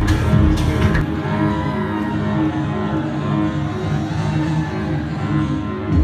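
Loud electronic dance music from a DJ set over a club sound system. The kick drum and bass drop out about a second in, leaving a breakdown of held melodic tones, and the beat returns at the very end.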